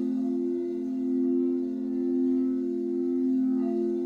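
Several frosted quartz crystal singing bowls sustained by a mallet rubbed around the rim, ringing together as steady low tones that swell gently. Brighter, higher overtones come in near the end.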